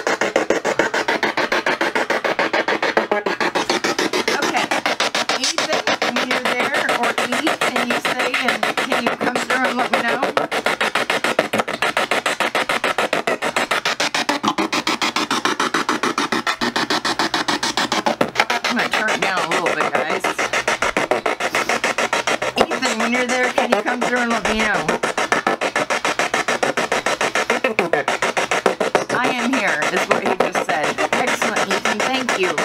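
PSB7 spirit box through an old JBL speaker, rapidly sweeping the radio band: a very loud, continuous chopping static with brief snatches of broadcast voices and music cut in and out.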